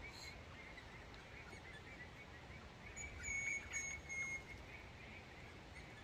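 Birds calling: faint scattered chirps throughout, then a run of about four short, clear whistled notes at one steady pitch about three seconds in, over a low outdoor ambience.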